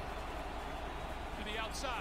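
Quiet football broadcast audio under a pause in the talk: a low, steady background with a faint voice about one and a half seconds in.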